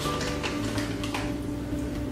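Background music with long held notes, with faint clicks and rustles of plastic snack packets being handled.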